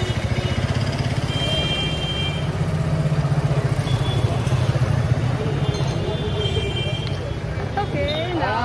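Busy street traffic, with a vehicle engine running close by as a steady low rumble and a few faint high tones over it.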